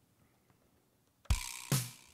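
Drum kit: after about a second of near silence, the drummer starts playing, with two loud strokes about half a second apart, each carrying a ringing cymbal wash. This is the start of an improvised pattern accenting the single notes of a paradiddle at a faster tempo.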